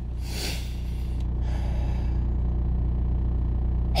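A long breathy exhale at the start, over the steady low hum of a car engine idling, heard from inside the cabin.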